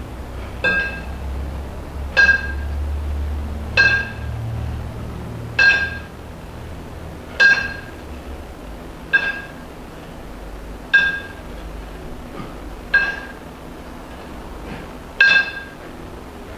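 Two kettlebells clinking together with a short metallic ring each time they meet in the rack position during double-kettlebell jerks, nine times at about one every two seconds.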